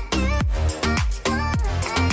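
Upbeat electronic dance music with a kick drum beating about twice a second and a pitched melody over it.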